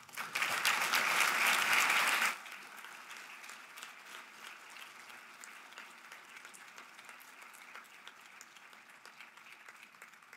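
Audience applauding, loudest for the first two seconds, then dropping suddenly to quieter, steady clapping that carries on.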